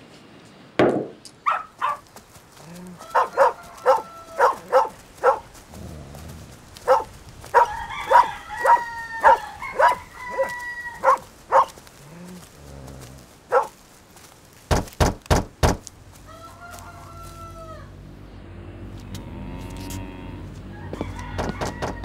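Chickens clucking and crowing in a farmyard, short calls coming in quick runs with some longer held calls in the middle. About fifteen seconds in come four quick heavy thumps, and music rises after them.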